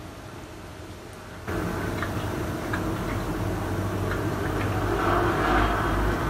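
Someone eating from a plate: a few faint clicks of a fork against the plate, and chewing. Under it is a steady hiss and low hum that jumps up in level about a second and a half in.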